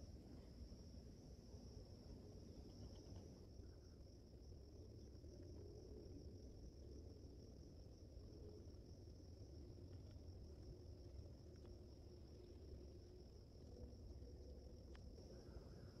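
Near silence, with a steady high-pitched chorus of crickets.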